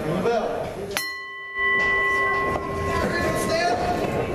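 A steady horn-like chord of several held tones starts abruptly about a second in, louder than the crowd, and holds for about two and a half seconds before fading into crowd chatter.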